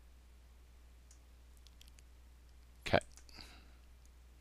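A single sharp computer mouse click about three seconds in, made in cutting a selected section out of the edit timeline. A faint steady low hum runs underneath, with a few faint ticks before the click.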